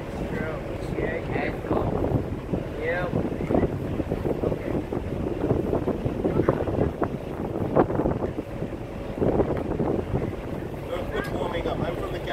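Wind buffeting the phone's microphone: a steady low rumbling noise that rises and falls in gusts, with snatches of voices nearby.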